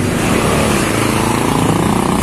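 Intercity coach bus driving past at close range, its engine and tyres loud as it goes by, with the pitch of its sound bending as it passes and then pulls away.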